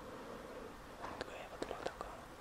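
A man whispering, with a few short sharp sounds near the end.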